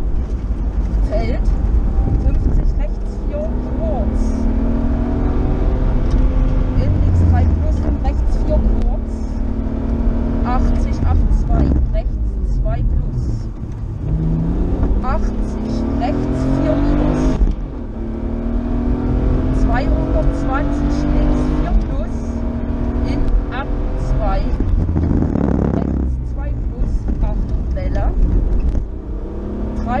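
BMW rally car's engine heard from inside the cabin at stage pace: the revs climb again and again through the gears, dropping back at each shift, with a few brief lifts off the throttle.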